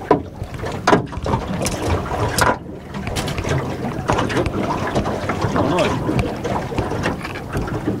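Wind buffeting the microphone and water moving against a small boat's hull, with a few sharp knocks in the first two and a half seconds.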